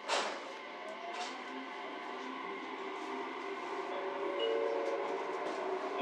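Electric train pulling away from a station, heard from inside the carriage: a brief burst of noise at the start, then the motor whine and running noise gradually rise in pitch and loudness as it gathers speed.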